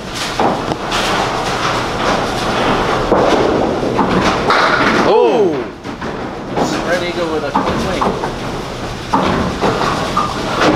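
Candlepin bowling balls rolling down a wooden lane with a steady rumble and knocking into the pins, amid the busy noise of the alley with voices.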